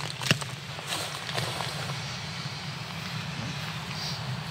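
A single sharp click just after the start, then faint handling ticks over a steady low outdoor rumble.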